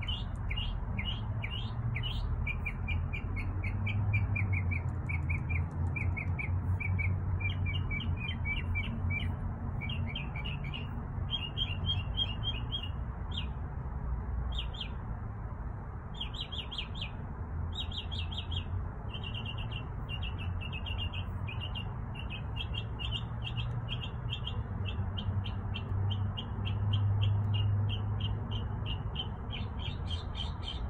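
Backyard birds chirping in quick runs of short repeated notes throughout, over a steady low rumble.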